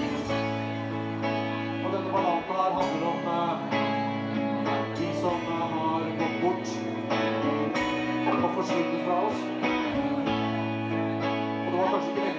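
Live band playing a quiet passage of a song: held keyboard chords under an electric guitar melody, with little drumming.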